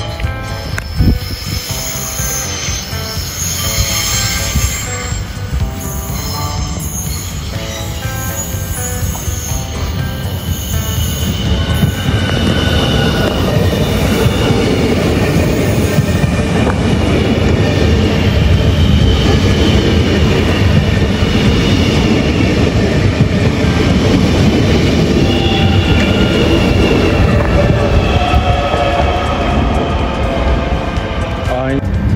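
X31K electric multiple unit running along the track and passing close by, with a rumble from the running gear and high wheel squeal. It grows louder about twelve seconds in and stays loud as the carriages go past.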